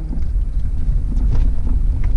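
Steady low rumble of a vehicle's engine and tyres, heard from inside the cab while driving.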